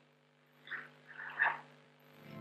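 A person's voice at the microphone: three or four short, croaky vocal sounds about a second in, the last the loudest, over a faint steady hum.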